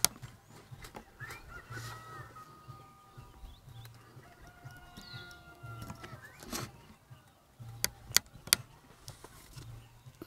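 Chickens clucking and a rooster crowing in the background, with a few sharp short clicks in the second half.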